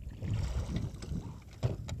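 Garmin Force trolling motor being pulled up by its stow cord and swinging into its bow mount: a quiet low rumble, with a couple of sharp clicks near the end as it seats into place.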